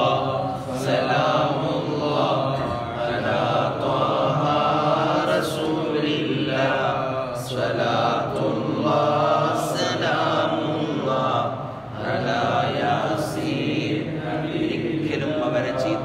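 A man's voice chanting in long, drawn-out melodic phrases, sung recitation rather than ordinary speech.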